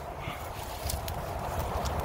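Footsteps and light rustling of a person walking through forest brush: scattered small clicks over a low, steady rumble.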